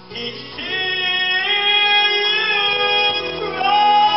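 Men's vocal group singing gospel through a PA, with a high lead voice holding long sustained notes. After a soft start the singing swells, and a new, louder held note comes in about three and a half seconds in.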